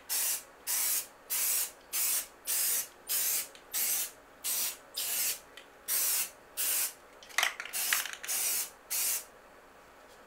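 Aerosol spray paint can sprayed in about fifteen short bursts, each under half a second, about two a second, stopping shortly before the end. A sharp click, the loudest single sound, comes about seven seconds in.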